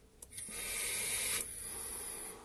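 A drag on a Freemax Mesh Pro sub-ohm vape tank with a 0.2 ohm double mesh coil fired at 80 watts: a click, then about a second of loud airy hiss that carries on more softly afterwards.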